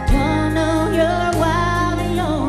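Live country music: a woman sings lead over her acoustic guitar and a backing band, with a new chord struck right at the start.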